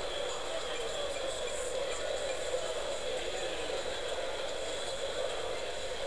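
Steady background hum and hiss with a faint high-pitched whine, unchanging and without distinct events.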